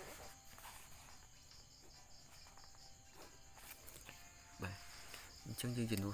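Faint, steady, high-pitched insect chirping: a pulsing trill that runs throughout.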